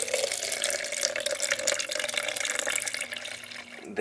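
Water poured in a thin stream into a clear plastic cup, a steady trickling splash that thins out near the end. It is the excess soaking water being drained off rockwool cubes.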